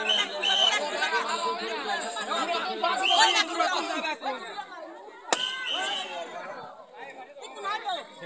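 Crowd of many voices chattering, with one sharp pop about five seconds in: a rubber balloon bursting in a balloon-popping game.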